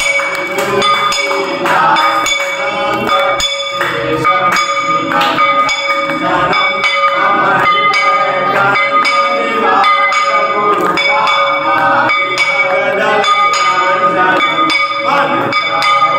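Temple bell struck over and over during a Hindu aarti, its ringing tone sustained, with a group of voices singing the aarti over it.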